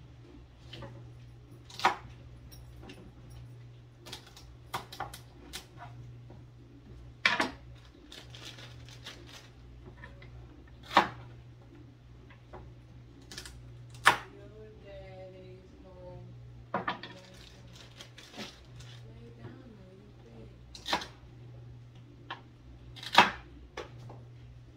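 Chef's knife cutting celery stalks on a wooden cutting board: irregular sharp knocks of the blade striking the board, one to three seconds apart, over a steady low hum.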